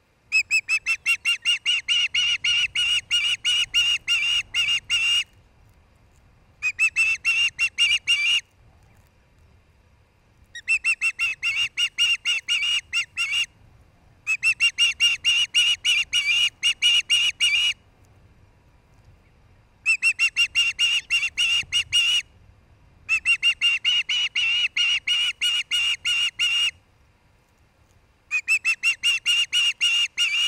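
Osprey calling close to the microphone: seven bouts of rapid, sharp whistled chirps, several notes a second, each bout lasting two to five seconds with short pauses between.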